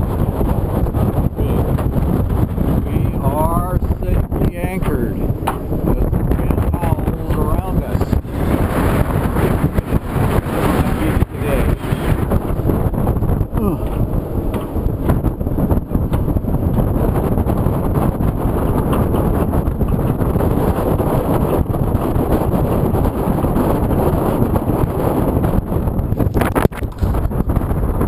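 Strong offshore wind buffeting the microphone on the deck of an anchored sailboat: loud, steady, gusty wind noise. A few short wavering whistles come through about four seconds in and again about seven seconds in.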